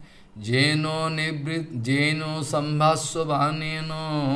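A man's voice intoning a verse in a chanting tone, with long held notes, starting about half a second in.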